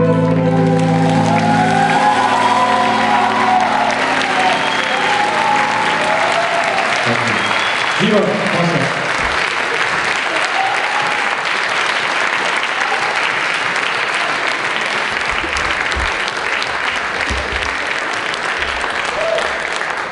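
Audience applauding steadily, as the band's last held chord dies away about two seconds in.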